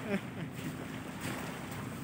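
Steady wind noise on the microphone, with gentle sea surf behind it.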